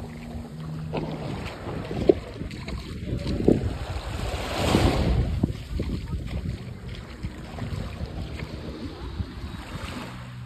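Small waves lapping and washing up on a sandy shore, with wind buffeting the microphone. One wash swells louder about five seconds in.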